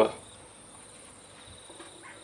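Faint, steady high-pitched trill of insects, with a couple of soft taps about three-quarters of a second apart in the second half.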